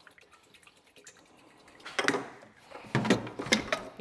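Brake fluid pouring from a metal can into a plastic pressure-bleeder bottle, a faint trickle. About two seconds in come several knocks and clatters as the can and bottle are handled and the can is set down.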